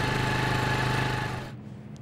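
Motor scooter engine running at a steady pitch, fading and then cutting off about one and a half seconds in.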